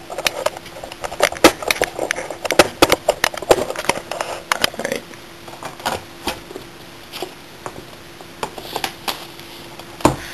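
Handling noise from paper sticker sheets and small objects being moved around: a quick run of clicks and rustles, thick for about the first five seconds and sparser after, over a faint steady hum.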